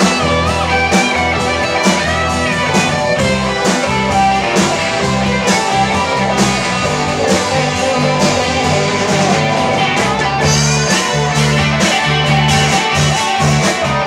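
Live rock band playing, with an electric guitar lead over bass and drums; the guitar line bends in pitch in the first few seconds.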